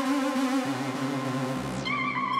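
Slow, dark electronic dance track: sustained low synth notes under warbling, vibrato-laden synthesizer tones, with the top end falling away shortly before the end.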